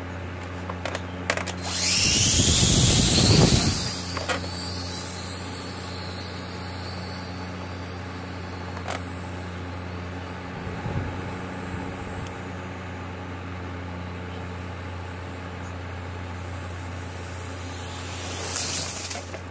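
Heliquad 2.4 Bladerunner micro quadcopter taking off close by: a loud burst of rotor whine and rushing air for about two seconds, then a thin high whine fading as it flies away. A steady low hum runs underneath throughout.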